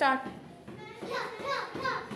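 A loud falling shout of "Start", then a child's short shouts in quick rhythm, about three a second, as she throws rapid punches into a kick pad, with faint pad hits under them.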